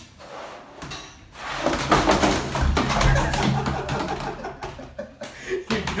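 Plastic laundry basket with a rider sliding and bumping down concrete stairs: after a short quiet start, a fast run of knocks and scraping about a second and a half in, with a few harder knocks near the end as he tumbles onto the floor at the bottom.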